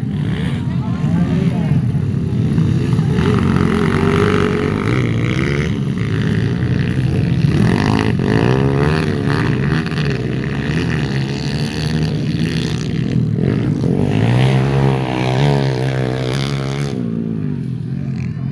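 Dirt-bike motorcycle engines racing past on a dirt track, their pitch rising and falling with the throttle, loudest about eight seconds in and again around fifteen seconds in.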